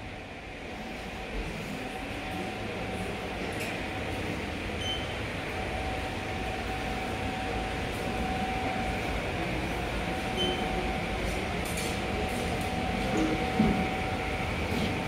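Floor-cleaning machine running: a steady mechanical whir with one constant hum held through it, growing a little louder over the first few seconds.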